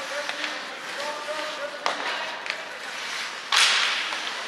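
Sounds of ice hockey play in an echoing rink: players' voices calling, a few sharp clacks of sticks and puck, and near the end a short, loud hissing scrape on the ice.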